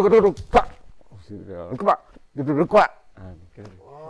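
A man's voice making short, sharp wordless calls with sliding pitch, several in a row, vocalising the accompaniment to a Balinese dance movement as he demonstrates it.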